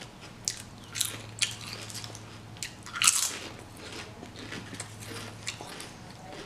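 Close-up mouth sounds of someone eating potato chips: several sharp crunches, the loudest about three seconds in, then softer chewing. A faint steady low hum runs underneath and stops near the end.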